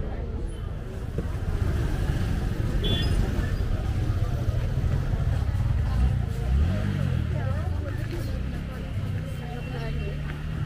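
Busy street ambience: indistinct chatter of passers-by over a steady low rumble of motor traffic.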